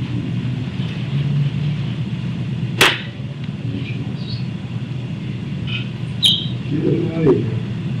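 Steady low room hum, with a sharp click about three seconds in and another a little after six seconds.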